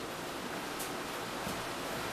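A fan running with a steady, even hiss, with a couple of faint light knocks in the middle.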